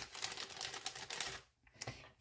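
Crinkling of clear plastic packaging being handled, a dense run of crackles for about a second and a half, then a couple of light clicks.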